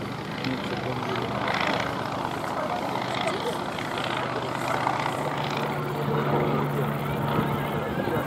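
Polikarpov Po-2 biplane's five-cylinder radial engine droning steadily as it flies overhead, growing louder about five seconds in. People can be heard talking over it.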